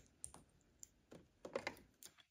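A handful of faint, light clicks and taps of small plastic parts being handled at a sewing machine's open bobbin area, spread unevenly across about two seconds.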